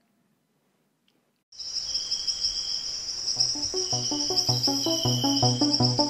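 Silence, then about a second and a half in a steady, high-pitched chorus of rainforest insects starts. About halfway through, music with a steady pulse of repeated low notes joins it.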